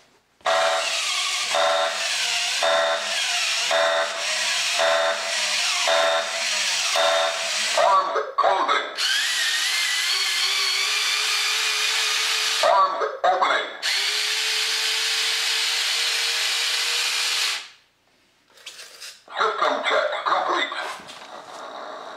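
A 1998 R.A.D. radio-controlled toy robot running its power-on system check. Its electric motors whir for about seventeen seconds as it works through its functions, with a repeating set of electronic tones about once a second over the first eight seconds. The motor noise stops suddenly just before the last few seconds.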